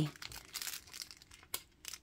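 Faint handling noise on a tabletop: light rustling and a few small clicks as tiny rhinestone embellishments are picked up and sorted by hand.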